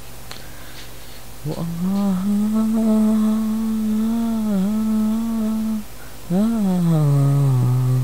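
A voice humming a long held note with a slight dip partway through, then a second note that swells briefly and glides down, over a steady low buzz.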